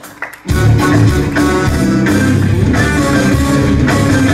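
Live band playing an upbeat instrumental passage on electric guitar and accordion. The music drops out for a moment at the start and comes back in full about half a second in.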